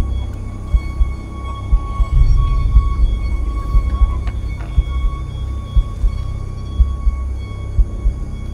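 Eerie horror background music: a low drone with a held high tone above it and scattered low thuds.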